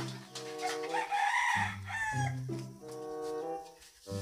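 Background music of held notes runs throughout. About a second in, a rooster crows once over it, the call ending in a falling glide.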